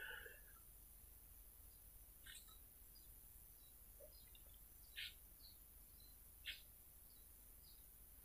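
Near silence, broken by three faint, short chirps spread across it.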